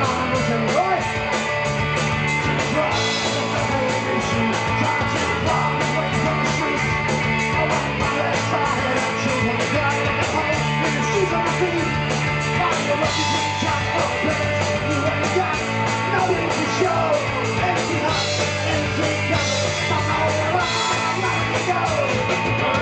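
Live rock band playing electric guitars and drums, with a singer's vocals over the top, loud and continuous.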